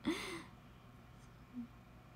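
A young woman's short, breathy laughing exhale, like a sigh, then quiet room tone with a brief soft hum from her about one and a half seconds in.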